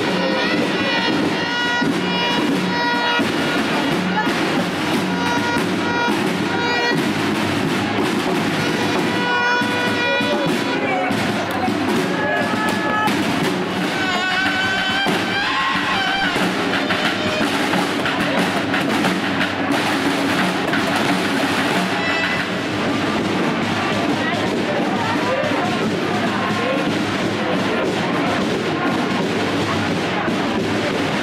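Procession band music: snare drums beating a march under a melody of held notes, with crowd voices.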